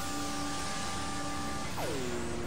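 Experimental synthesizer noise-drone music: a dense hiss-like wash with several held steady tones. Near the end the higher tones stop and a tone slides steeply down in pitch, settling low.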